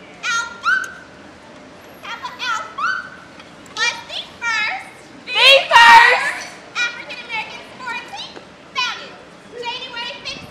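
Women's voices chanting and calling out in short, high-pitched shouts as a sorority step-show routine, with a loud burst of shouting about six seconds in.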